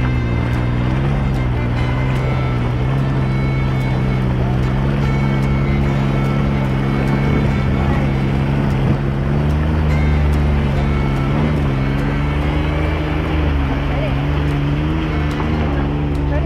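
Can-Am Maverick X3 side-by-side's three-cylinder engine running steadily at low speed as it wades through a shallow, fast river, with water rushing and splashing around the tyres.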